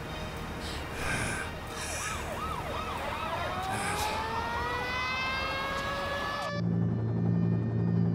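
An emergency vehicle siren: a fast up-and-down yelp, about three cycles a second, turning into a long slowly rising wail. It cuts off suddenly about six and a half seconds in, giving way to a steady low hum.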